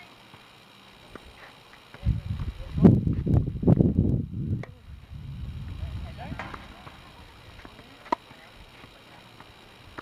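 Tennis rally on a hard court: a racket strikes the ball with one sharp pop about eight seconds in. A loud low rumble fills a few seconds in the middle.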